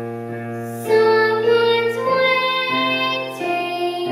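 A young girl singing a solo melody in held notes, with keyboard accompaniment; a new, louder phrase begins about a second in.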